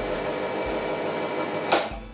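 Gaggia Classic espresso machine's vibratory pump humming steadily as a shot pulls. The shot is running too fast through a too-coarse grind. A sharp click comes near the end as the machine is switched off.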